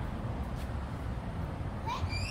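Steady low rumble of street traffic. Near the end a short, high animal call begins, rising in pitch.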